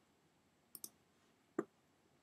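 A few faint clicks from working a computer: two quick clicks close together just before the middle, then a single slightly louder click about a second and a half in.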